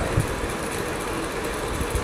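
Steady mechanical hum and hiss of a machine running in the room, with no change through the pause.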